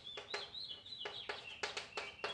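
Chalk writing on a blackboard: a quick run of short scraping strokes, about three a second. A thin, high, whistle-like tone runs over them and steps slowly down in pitch.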